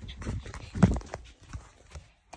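Footsteps walking across a carpeted floor: a few irregular thuds, the loudest a little under a second in, with the rustle of a hand-held phone moving.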